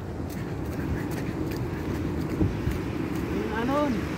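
Steady low rush of wind on the microphone and breaking surf, with a voice starting just before the end.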